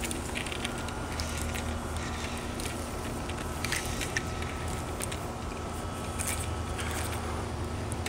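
Steady low background hum with a faint steady machine-like tone, broken by a few light ticks.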